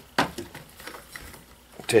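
A single sharp click, then faint rustling and handling noise as the fabric folding solar panel and its carabiner are handled.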